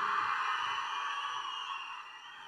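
Crowd cheering in an auditorium, dying away steadily, with a faint high whistle-like tone running through it.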